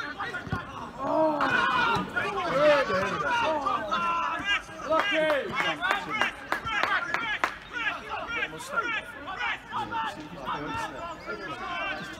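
Several voices talking and calling out over one another, the chatter and shouts of spectators and players during a football match. A few short, sharp knocks come about six to seven seconds in.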